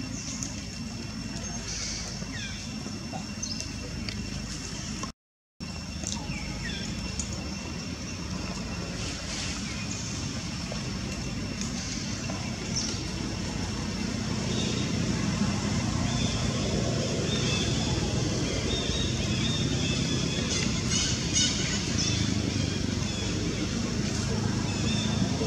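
Outdoor background noise: a steady low rumble and hiss with two thin steady high tones, growing louder about halfway through, and a few short high squeaks. The sound cuts out completely for half a second about five seconds in.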